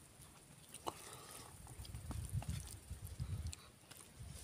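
Fingers mixing rice and pork curry on a steel plate: soft wet clicks and squishes, with a low rumble in the second half.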